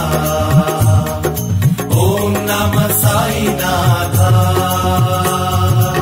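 Hindi devotional song to Sai Baba: a chanted melodic line over evenly repeated low drum strokes and instrumental accompaniment.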